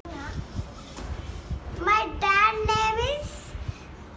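A young boy speaking a short answer, his name-like words coming about two seconds in, over a faint low rumble of room noise.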